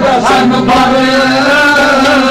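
Kashmiri folk song: a male voice sings one long note that slides up at the start and then wavers, over steady instrumental accompaniment.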